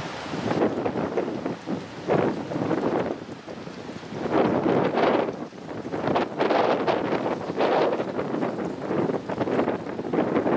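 Gusty wind buffeting the microphone in irregular surges, rising and falling every second or so.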